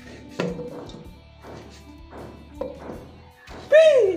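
Background music over a knife working a cucumber in a steel pot: a thunk about half a second in, then several short scraping cuts. Near the end comes a loud, short voice-like sound that falls in pitch.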